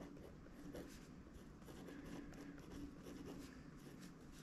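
Faint scratching of a pen writing on a paper planner page, in short, irregular strokes.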